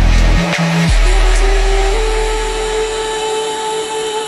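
Drum and bass music in a breakdown: the drums stop about half a second in, then a deep sub-bass note drops in and slowly fades while a steady synth tone holds over a hissy texture.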